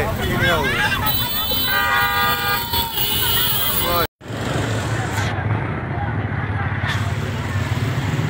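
Street crowd talking while a vehicle horn sounds steadily for about a second; after a brief dropout in the audio, a steady low engine rumble runs under the voices.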